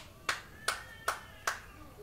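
Four single hand claps at an even pace, about two and a half a second.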